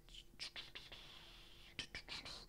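Near silence at a microphone: faint breathing and a few small mouth clicks over a faint steady hum.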